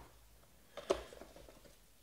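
Trading-card pack and its torn foil wrapper being handled: faint rustling with one sharp click about a second in.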